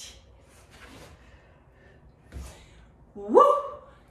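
A woman's short, breathy exhalations of exertion during a weighted side-lunge exercise, then a brief voiced sound rising in pitch about three seconds in.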